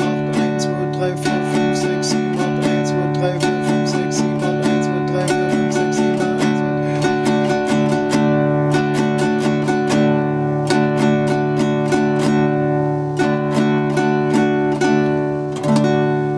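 Nylon-string classical guitar strummed on an open D major chord in a steady, fairly quick down-up rhythm, the same chord ringing throughout.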